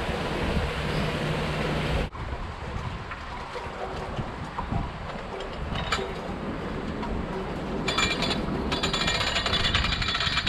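Canal lock paddle gear being wound with a windlass: the metal ratchet and pawl clicking rapidly, with a metallic ring, from about eight seconds in. Before that, steady outdoor background noise.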